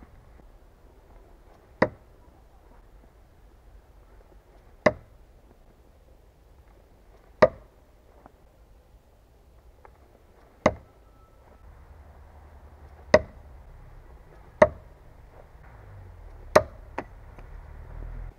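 A heavy throwing knife, the Cold Steel Perfect Balance Thrower, striking a wooden target. There are about eight sharp knocks, spaced roughly two to three seconds apart, each with a short ring.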